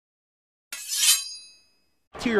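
Intro graphic sound effect: silence, then about 0.7 s in a short bright swell that peaks with a metallic chime. The chime rings on in a few high tones and fades out by about 1.8 s.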